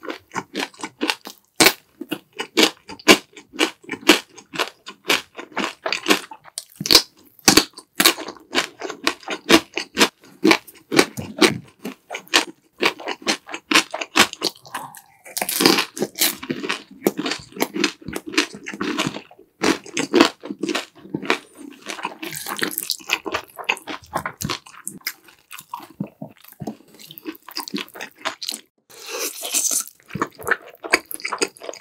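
Close-miked crunching and chewing of pickled yellow radish (danmuji), with many quick crisp crunches in a row. Near the end comes a wetter slurp of noodles.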